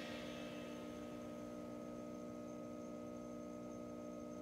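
A steady hum made of several held tones, unchanging throughout.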